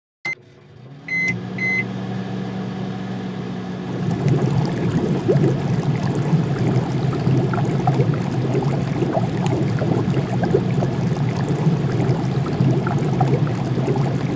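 An induction hob is switched on: a button click and two short high beeps. A steady low hum follows, and from about four seconds in it grows louder, with crackling and bubbling as the hotpot broth comes up to a simmer.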